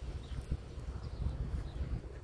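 Footsteps on pavement, irregular taps over a dull low rumble of wind and handling on the phone's microphone.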